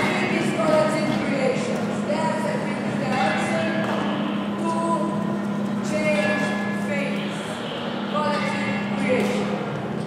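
Voices making drawn-out, pitched vocal sounds without clear words, over a steady low hum from running electric floor fans.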